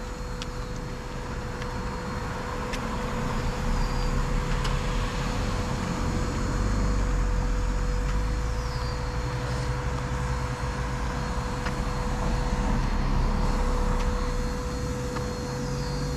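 Road traffic, cars passing through a residential roundabout: a low rumble that swells through the middle and eases near the end. A steady faint hum runs under it, with a few short high chirps.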